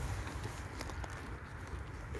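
A foal chewing a Brussels sprout, a few faint crunches over a steady low rumble.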